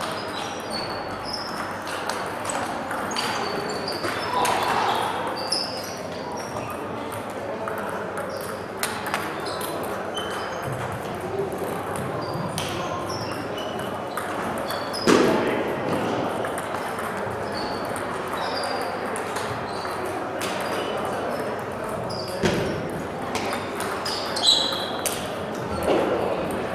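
Table tennis hall ambience: scattered sharp clicks of celluloid ping-pong balls off bats and tables from the surrounding tables, over a steady murmur of voices in a large echoing hall. Short high squeaks come and go, and there is one louder knock about halfway through.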